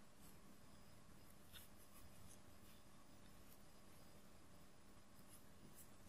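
Near silence: room tone with a steady low hum and a few faint rustles of yarn being drawn through crocheted fabric.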